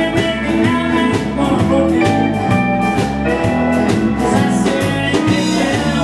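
Live country band playing an up-tempo song at a steady beat: electric and acoustic guitars, pedal steel guitar, bass and drums.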